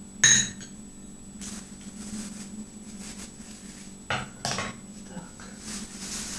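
A metal spoon clinks once against a glass bowl about a quarter second in, with a short ring, then quiet handling noise of a plastic bag.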